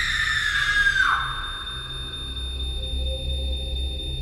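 Horror-film sound design: a high, piercing held tone that sags slightly in pitch and cuts off abruptly about a second in. It gives way to a low, eerie droning score with faint high tones.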